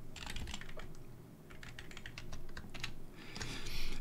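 Typing on a computer keyboard: a run of light, irregular key clicks, with a short pause about a second in before more keystrokes.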